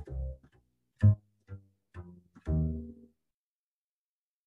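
Double bass played pizzicato: a short line of single plucked notes over a minor ii–V–i (Dm7♭5 to G7♭9 to Cm7), ending on a longer ringing note about two and a half seconds in.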